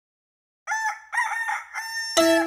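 A rooster crowing once, a cock-a-doodle-doo of about three pitched syllables that starts after a moment of silence, about half a second in.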